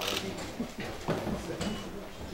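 Indistinct chatter of several people talking at once, with a short sharp click right at the start.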